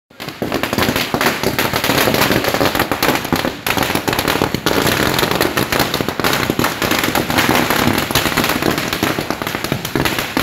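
Ground firecrackers going off on a street, spraying sparks in a dense, rapid crackle of many small bangs that starts suddenly and doesn't let up.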